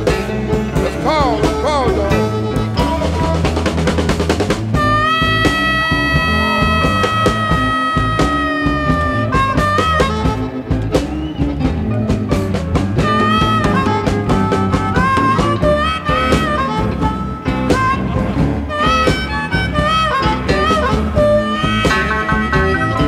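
Electric blues instrumental break with a harmonica solo over a band with drums. The harp bends notes early on and holds one long note from about five to nine seconds in.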